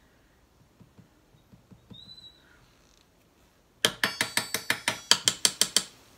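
A rapid run of about a dozen sharp ratchet-like clicks, roughly six a second, starting about four seconds in and lasting about two seconds.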